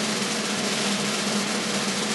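A steady, even snare drum roll held at a constant level.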